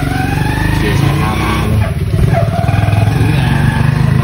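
An engine running steadily, with a low, fast pulse.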